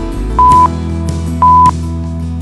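Interval timer countdown beeps: two short, loud electronic beeps about a second apart, over background music. They count down the last seconds of the rest before the next exercise starts.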